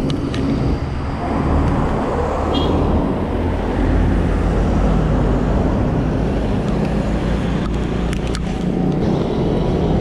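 Road traffic and rushing air heard from a moving bicycle: a steady noisy rush with a strong low rumble, a van's engine passing close alongside, and a couple of brief clicks near the end.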